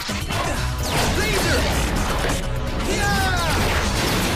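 Fight-scene soundtrack: action music under a dense run of crashes and hits, with falling whistling tones about a second in and again about three seconds in.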